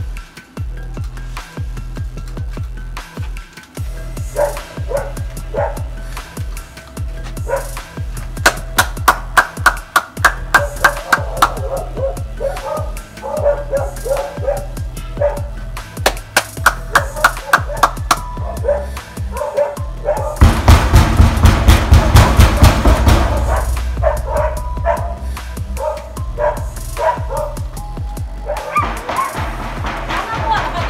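Background soundtrack music with a steady deep bass and a repeating beat, growing denser and louder for a few seconds past the middle.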